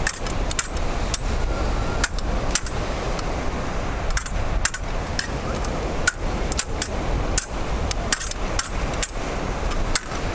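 Cup-hilted stage swords clashing blade on blade in a rehearsed fight: sharp metallic clinks, some with a short ring, coming irregularly about one or two a second, over a steady rush of wind and surf.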